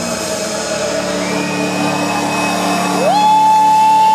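Live rock band ringing out a final sustained chord. About three seconds in, a tone slides upward and holds high as the chord sustains.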